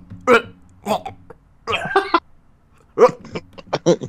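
Laughter and short gagging, retch-like vocal noises from a man on an online voice call, made in disgust as if the thought has made him sick.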